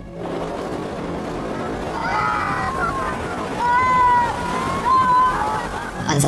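Steady rushing noise of big surf and wind, with voices shouting over it from about two seconds in.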